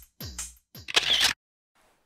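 Tail of an electronic intro sting: two falling, booming kick-drum hits, then a short shutter-click sound effect about a second in, after which the audio cuts off.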